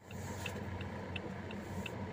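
Inside a car cabin: the engine runs as a steady low hum while the indicator relay ticks evenly, about three ticks a second.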